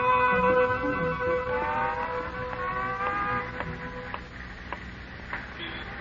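Brass music bridge between scenes of a 1940s radio comedy: a held brass chord with two rising slides about two and three seconds in, fading out after about four seconds, then a few faint clicks.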